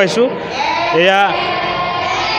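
A person's voice: a brief spoken fragment at the start, then one drawn-out, wavering call about a second in, over steady room noise.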